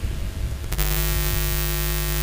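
Low room rumble that cuts over, about three-quarters of a second in, to a loud steady electrical mains hum with hiss, as from a sound system or microphone line.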